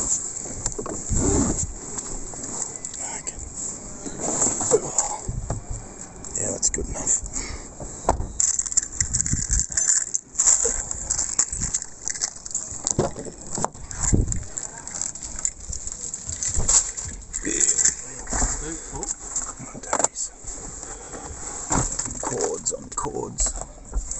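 Irregular rustling, knocks and handling noise of a phone camera moved about while gear is loaded into a car.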